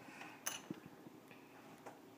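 A few faint clicks of small plastic Lego minifigure parts being handled and pressed together.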